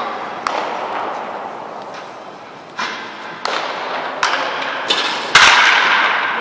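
A baseball bat striking a ball in batting practice: one loud, sharp crack near the end. Several fainter knocks come before it, at about one-second intervals over its second half.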